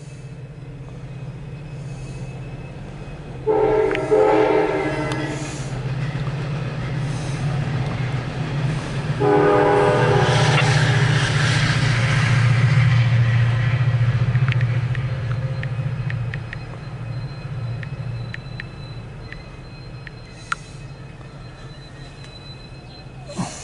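Freight train locomotive horn sounding two long blasts, one about four seconds in and one about nine seconds in. Under them runs the steady low rumble of loaded autorack cars rolling past, and sharp wheel clicks come through in the later half.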